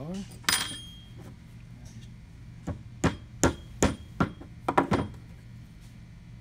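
Hammer tapping a roll pin into a worm gear's pin hole: a louder knock about half a second in, then about eight sharp taps over two seconds, the last three in quick succession.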